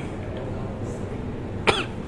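A man's single sharp cough close to the microphone near the end, over a steady low room hum.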